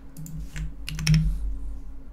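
Typing on a computer keyboard: a short, irregular run of key clicks, a few close together about a second in.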